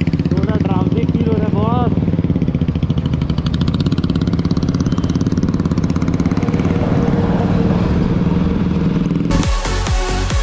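Suzuki Gixxer 155's single-cylinder engine running steadily as the motorcycle rides off along the highway, heard from the bike itself with wind noise. Electronic dance music cuts in suddenly near the end.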